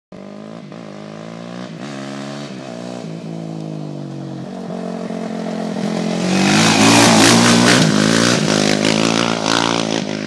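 Suzuki LTR 450 quad's single-cylinder four-stroke engine revving up and easing off as it approaches, growing louder. About six seconds in it reaches full throttle close by, with a rasping hiss as the tyres slide sideways through the turn.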